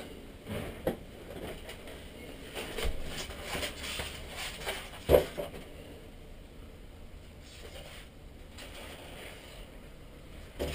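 Handling noise from unpacking a radio transmitter: a cardboard box and plastic packaging tray scraping and knocking, with the sharpest knock about five seconds in.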